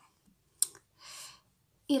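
A single sharp click, then a soft breath-like hiss about half a second later.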